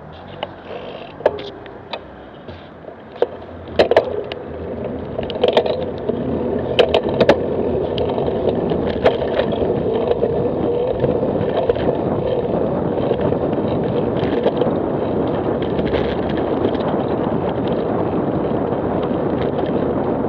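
A bicycle being ridden along a cycle lane, with wind rushing over the microphone: a handful of sharp clicks and knocks from the bike in the first seven seconds or so while the rush builds up as the bike gathers speed, then a steady, even rush.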